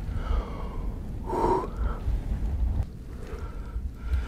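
A man's breathing with one sharp, breathy intake about a second and a half in, over a steady low rumble.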